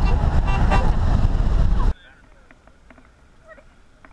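Loud rushing rumble inside a car, with voices mixed in, which cuts off abruptly about two seconds in. A much quieter stretch with faint, distant voices follows.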